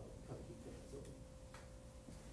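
Quiet room tone with a faint steady hum and a few soft ticks, roughly one a second.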